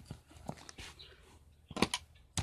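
Light handling sounds of a small plastic wall charger being moved and set down on a paper manual on a cloth-covered table, a few faint clicks with a sharper double knock near the end.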